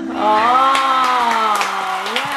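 A harp's last plucked notes ring out as one person gives a long, slightly falling cheer, with hand claps.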